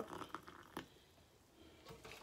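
Faint end of hot water pouring from a stainless steel saucepan into a ceramic mug, followed by a few soft clicks as the pan is moved away and set down, with near silence in between.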